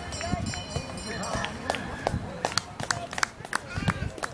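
Voices calling and shouting across an open rugby league field, with a run of sharp clicks in the second half.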